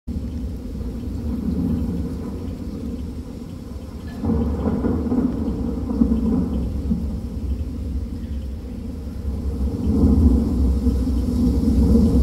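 A deep rumble over an arena's loudspeakers, stepping up in loudness about four seconds in and swelling again near the end.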